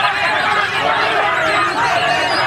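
A dense chorus of many caged white-rumped shamas singing at once: overlapping whistles, trills and sliding notes with no pause.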